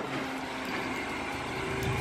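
A car-transporter truck's engine idling, a steady low hum with light background noise.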